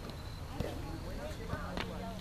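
Distant shouting voices across an open field over a steady low rumble, with a few faint short knocks.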